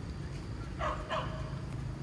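A dog barking twice, two short barks about a third of a second apart, about a second in, over a low steady hum.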